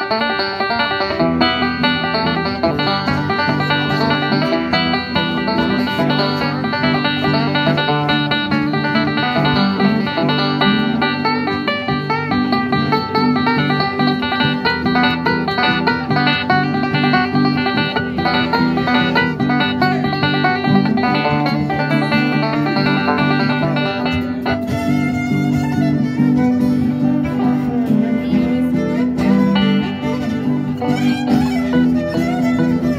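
Five-string banjo picking a bluegrass lead over a steady bass line and acoustic band backing. In the last few seconds a fiddle comes in.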